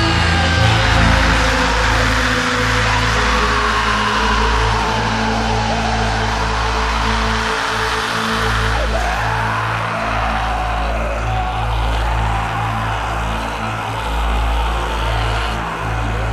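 Lo-fi thrash metal demo recording: distorted electric guitar and bass hold a low, droning chord, while wavering guitar squeals slide up and down above it and no steady drumbeat stands out.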